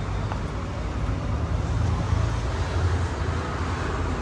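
Steady low rumble of road traffic, with no single vehicle standing out.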